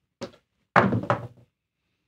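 Dice thrown onto a craps table: a light click, then a louder thunk with a brief clatter as they land and settle.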